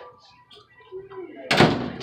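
A fitting-room stall door banging, one sudden loud bang about one and a half seconds in, after a quieter stretch with faint voices.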